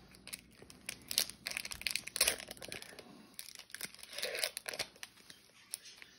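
A hockey card pack's wrapper being torn open by hand, in short irregular crinkling rips with brief pauses, loudest a second or two in.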